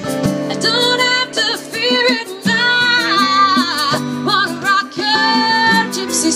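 Live band music: a woman's voice holding wavering sung notes over a strummed acoustic guitar and an electric guitar.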